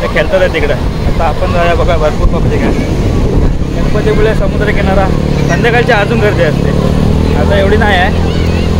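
A man talking throughout, over a steady low rumble.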